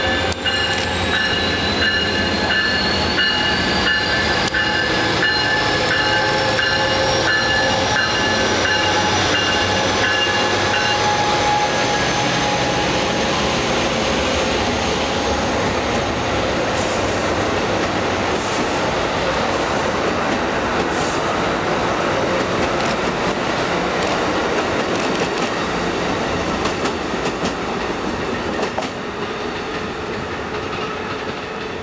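Amtrak passenger train led by an SC-44 Charger diesel locomotive passing close by. For its first ten seconds or so a bell rings about twice a second over a whine that rises in pitch. The coaches follow with their wheels clicking and squealing, and the sound fades near the end.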